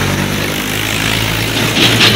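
A motor vehicle engine running steadily close by: a low hum under a hiss of noise, the hum fading near the end.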